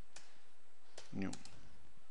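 Computer keyboard keystrokes: a few separate key clicks as text is typed slowly, one key at a time.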